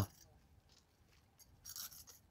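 Faint scraping and clicking of a plastic key lockbox being handled, a short cluster of sounds near the end.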